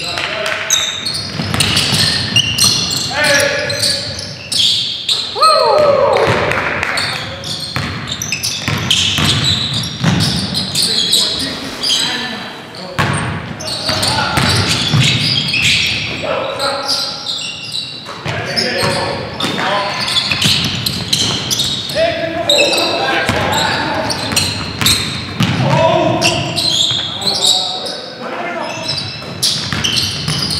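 Basketball game on a hardwood gym court: the ball bouncing and players' shoes and bodies thudding on the floor, mixed with players shouting and calling out, all echoing in a large gymnasium. A short squeal glides downward about six seconds in.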